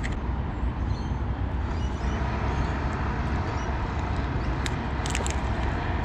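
Steady low rumbling background noise, with a few light clicks about five seconds in.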